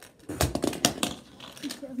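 Plastic Lego Ninjago Spinjitzu Burst spinner slammed down and spinning on a hard tabletop: a quick run of sharp plastic clicks and knocks about half a second in, lasting under a second. A child's voice or laugh follows near the end.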